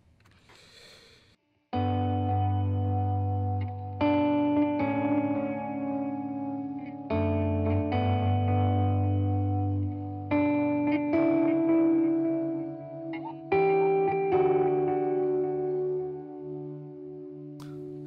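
Electric guitar played through a Diamond Memory Lane Jr. delay pedal set to dotted-eighth repeats. A series of sustained chords and notes, each trailed by echoes, starts about two seconds in after a near-silent pause, with new notes struck every one to three seconds.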